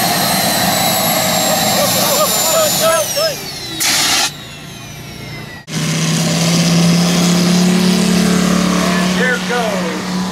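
A model jet's turbine engines whine high, the pitch sinking slowly and then faster, with a short hiss partway through. Then a large-scale model Corsair's five-cylinder radial engine runs steadily at takeoff power.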